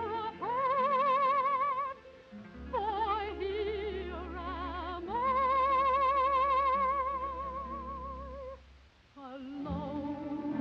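A female operatic soprano sings long, high, held notes with a wide vibrato over a low, sustained accompaniment. One note is held from about half a second in until two seconds, and another from about five seconds until past eight.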